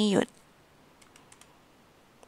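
A woman's voice ends a word at the very start, then a few faint computer clicks about a second in as the presentation slide is advanced.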